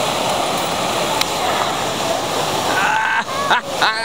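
Water rushing and splashing steadily through a log flume ride's channel. Near the end a person's voice cuts in over it.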